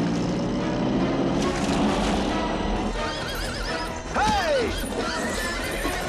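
A horse whinnies once about four seconds in, a neigh that falls away in pitch, over galloping hoofbeats and dramatic film score music.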